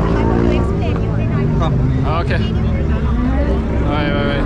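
A large vehicle's engine running close by, a low steady drone, under the chatter of a crowd.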